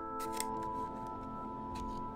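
Small, sharp clicks of plastic 35 mm slide mounts being handled: two quick clicks just after the start and one more near the end. Sustained background music plays underneath.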